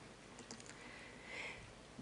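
A few faint clicks of a laptop key being pressed to advance the presentation slide, about half a second in, then a soft, brief rustle a little after a second, in an otherwise quiet room.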